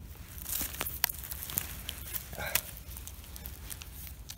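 Pine needles, moss and twigs on the forest floor rustling, with scattered small crackles and snaps, as a hand digs out a yellow knight mushroom and cuts it free with a knife.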